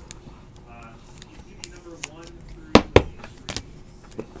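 Trading cards being handled and sorted by hand: a few sharp clicks of card stock, the two loudest close together about three seconds in.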